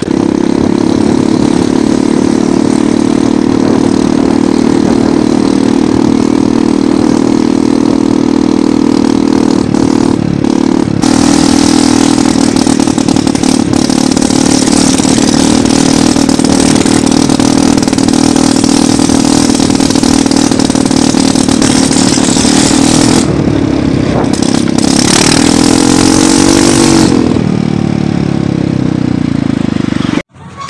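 Small motor scooter engine running steadily under way, with strong wind rush on the microphone that grows louder about a third of the way through. Near the end the engine note dips and rises briefly.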